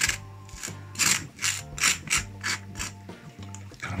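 Table knife scraping across lightly toasted bread as it spreads on it, a run of short dry rasping strokes about three a second.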